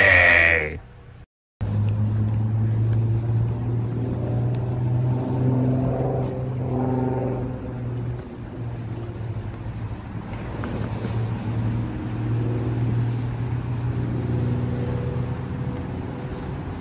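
A steady low mechanical hum that starts suddenly about a second and a half in, after a brief silence. Fainter wavering tones come and go over it.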